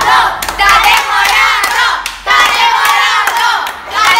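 A group of young girls clapping and shouting together, many voices overlapping with sharp hand claps.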